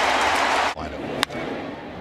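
Loud crowd cheering that cuts off abruptly under a second in. Then a quieter ballpark murmur and a single sharp crack of a baseball bat hitting the ball.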